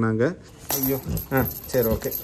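Metal chain dog collar jingling and clinking as the dog is turned over by hand. A man's voice is heard at the start and briefly in between.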